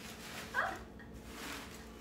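A dog gives one short, high, rising whine about half a second in.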